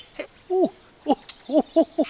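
A voice chuckling in a string of short, falling 'hoo' sounds, sparse at first and coming faster near the end.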